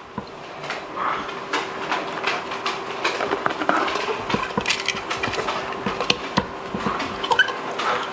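Hands pressing a cabbage leaf down onto brine-soaked shredded red cabbage in a one-gallon glass jar: irregular wet squelching and crackling clicks. A faint steady hum runs underneath.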